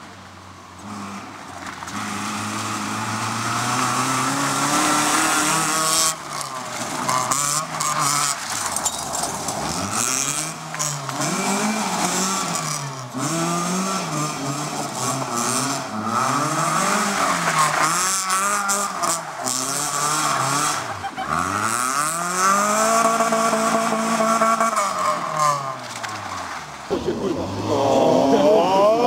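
A FSO Polonez Caro rally car's engine revving hard through several passes, its note climbing and dropping over and over as it accelerates, shifts gear and slows for corners.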